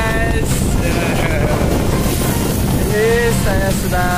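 Motor of a small outrigger boat running steadily under way, with wind on the microphone. A person's voice breaks in briefly a few times.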